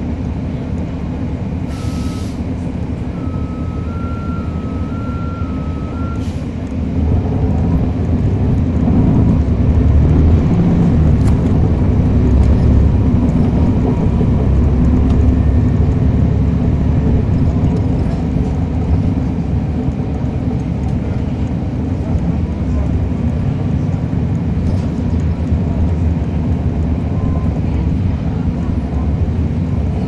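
On board a NABI 40-foot transit bus: its Cummins ISL9 diesel runs quietly at first, then about seven seconds in it pulls away under throttle and grows louder for about ten seconds before settling to a steady cruise. Near the start there is a short hiss of air and a brief run of alternating electronic beeps.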